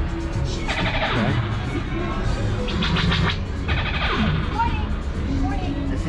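Background music with a singing voice, playing steadily and fairly loud.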